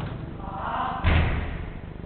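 A football struck hard about a second in: a single loud thud that rings on briefly in the hall.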